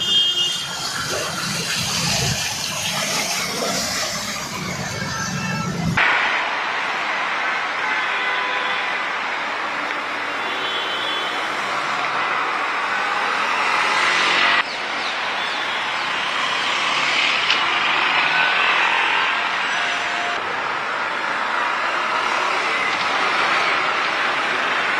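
City street traffic noise: a steady hiss of vehicles with a few faint short high tones over it. The sound changes abruptly about six seconds in and again about halfway through.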